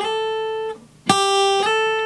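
Steel-string acoustic guitar playing quick legato slides from the 3rd to the 5th fret of the E string, G up to A. The first slide lands right at the start and its note is stopped under a second in. About a second in the 3rd-fret note is picked again and, half a second later, slid cleanly up to the 5th fret without re-picking, no middle note heard, and left ringing.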